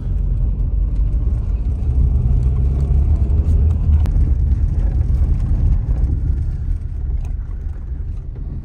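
Low, steady rumble of a car driving on a dirt road, heard from inside the cabin: engine and tyre noise that swells in the middle and eases near the end. A single sharp click about four seconds in.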